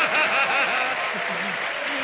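Studio audience applauding, with voices over it.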